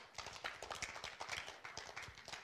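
Faint, irregular rapid clicks and taps, with no speech.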